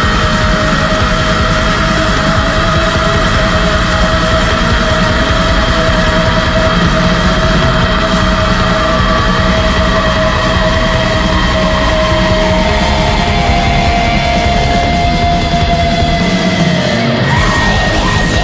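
Loud, dense black metal music with a long held melody line over it; the melody slides down in pitch near the end.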